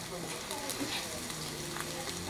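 Quiet, steady sizzling of sukiyaki cooking in the tabletop pan, under faint background voices.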